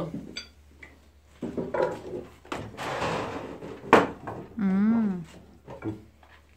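Wooden clacks and knocks from a hand loom as the woven cloth on its front beam is handled, with a rustle of fabric and a few sharp clicks, the loudest about four seconds in. A short voiced 'mm' comes just before the end.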